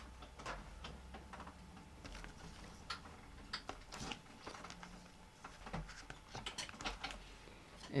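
Faint, irregular clicks and taps of acrylic embossing plates and an embossing folder being handled at a die-cutting and embossing machine.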